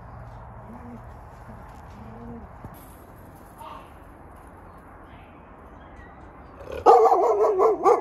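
Faint steady background, then about seven seconds in a dog or wolf gives one loud, long, wavering yowl lasting about a second, followed by a short yelp.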